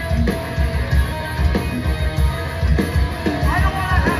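Hardcore punk band playing live: distorted electric guitars, bass and drums, loud and continuous, with a steady driving beat.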